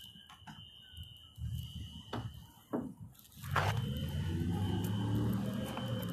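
Body-worn camera handling noise: a few sharp knocks and rustles in the first half, with a faint steady high tone throughout. About halfway through, a steady low rumble starts.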